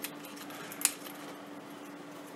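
Small metallic handling clicks as a collet and chuck nut are fitted and screwed onto a rotary tool's nose, with one sharp click about a second in. A faint steady hum runs underneath.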